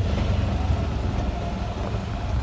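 Side-by-side off-road vehicle driving on a dirt track, a steady low engine rumble with road noise.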